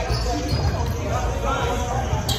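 A volleyball rally in an echoing gym: the ball is struck and feet land on the hardwood court, with players' voices in the background.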